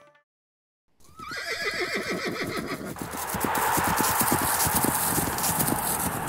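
A horse whinnies, then many hooves clatter quickly. From about three seconds in, a steady rush of noise swells in under the hoofbeats.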